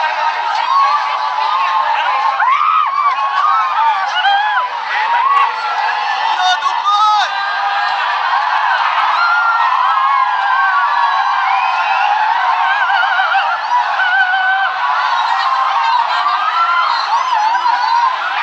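A large crowd of runners shouting and cheering all at once, many voices overlapping in a loud, unbroken din.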